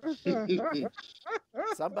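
A man laughing in a quick run of short pitched syllables, with speech starting near the end.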